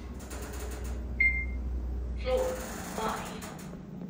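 Schindler 3300 machine-room-less traction elevator: a low hum in the cab stops a little over two seconds in, with a single short high beep about a second in, then a stretch of louder noise.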